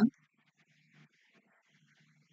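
The clipped end of a woman's spoken "yeah" right at the start, then near silence with only faint, indistinct murmurs.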